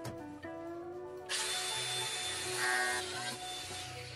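A handheld power tool cutting through a white plastic tube. It starts about a second in and runs for about two and a half seconds before it stops.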